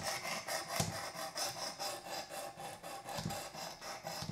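Knife sharpening on a Work Sharp Precision Adjust guided sharpener: its coarse 320-grit diamond plate rasping along the clamped blade's edge in quick, repeated back-and-forth strokes.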